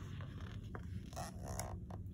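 Quiet scraping and rustling of a stiff, glossy picture-book page being turned and slid flat by hand, with a couple of brief scuffs about halfway through.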